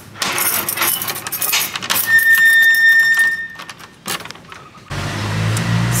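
A bunch of metal keys jangling and clicking as a key is worked in the lock of an old wooden door, with a steady high squeal for about a second and a half from about two seconds in. Near the end it gives way to a steady low traffic rumble.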